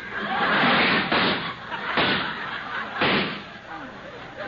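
Radio sound effects of an old car's motor being started and misbehaving: a clattering burst, then sharp bangs about a second apart, near 1, 2 and 3 seconds in.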